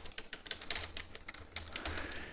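Computer keyboard typing: a quick, uneven run of keystroke clicks.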